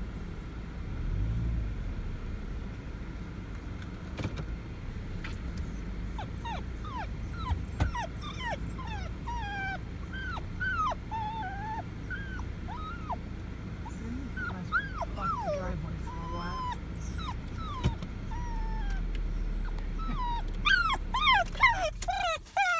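Wirehaired dachshund whining and yipping with excitement at nearing home: short, high, mostly falling cries that start about six seconds in and come thicker and louder near the end. The moving car's low road noise runs underneath.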